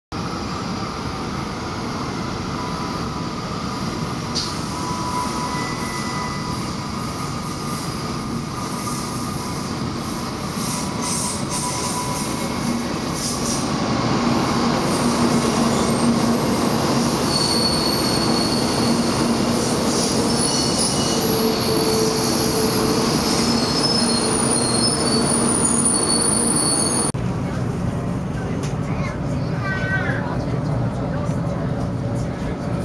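Taiwan High Speed Rail 700T train pulling into an underground station, its running noise swelling about halfway through, with high squealing tones as it slows along the platform. Near the end the sound cuts suddenly to the steadier hum inside the train's cabin.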